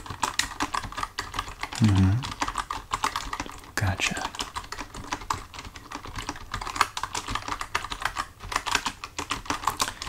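Typing on a computer keyboard: a continuous run of quick, irregular key clicks, several a second.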